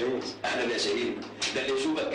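Speech only: a man talking in Arabic, with a short pause about half a second in.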